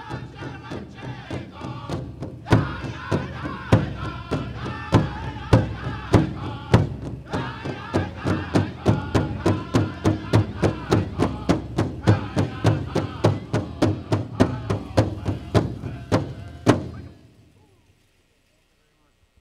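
Powwow drum group singing a song over a steady, fast beat on a big drum, with some beats struck much louder than the rest. The song ends with a last hard drumbeat near the end, and the sound dies away.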